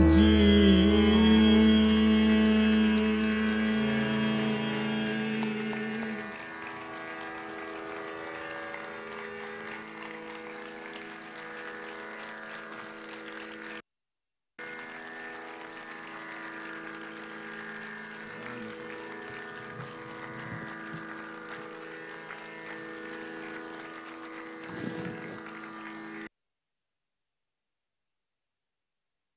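Tanpura drone ringing on steadily as a Hindustani classical piece ends, with the final held notes fading away over the first six seconds. It drops out briefly in the middle and cuts off abruptly near the end.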